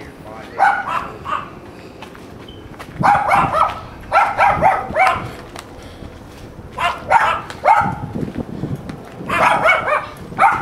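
A dog barking in bursts of several quick barks, about five bursts with pauses of a second or two between them.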